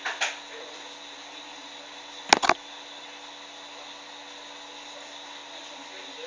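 Steady low hum and hiss of room and recording noise, with two soft taps at the start and a sharp double click a little over two seconds in.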